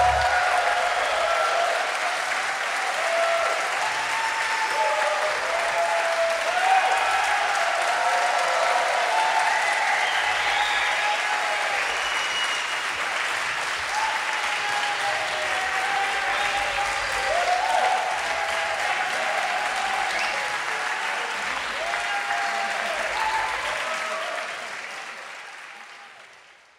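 Concert-hall audience applauding at the end of a show, with voices cheering over the clapping. The applause fades out near the end.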